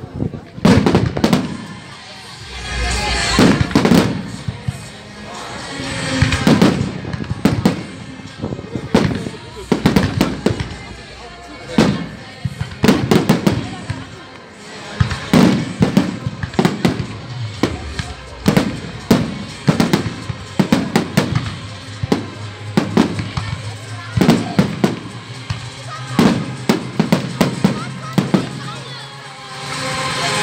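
Fireworks display: aerial shells bursting one after another in rapid, irregular succession, many sharp bangs throughout.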